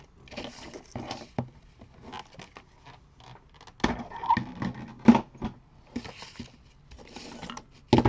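Paper and plastic craft tools handled on a cutting mat: soft rustling and sliding of paper and card, broken by several sharp knocks as a paper trimmer is moved off the mat and tools are picked up and set down. The loudest knock comes about five seconds in.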